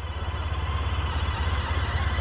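Low, steady engine rumble with a fast, even pulse, like a motor vehicle idling close by.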